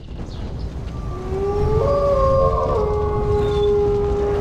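Wolf howl sound effect over a deep steady rumble. Long, overlapping howls come in about a second in, glide up and then hold steady.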